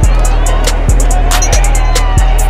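Background music with a heavy bass line and a steady beat of about one and a half beats a second, with crisp hi-hats over it.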